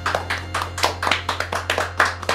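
A few people clapping their hands, a quick, uneven run of claps.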